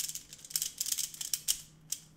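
Meffert's Hollow 2x2 puzzle cube being turned, its layers giving an irregular run of light plastic clicks from the internal spring-and-screw click mechanism, with a quick cluster of clicks near the end.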